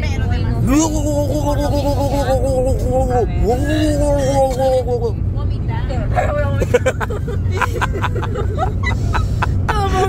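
Steady low road and engine rumble inside a moving passenger van. Over it, a woman's voice is drawn out in long pitched tones for the first half, followed by scattered clicks and knocks.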